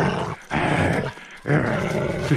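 Dog growling during a tug-of-war over a rope toy, in three stretches with short breaks between them.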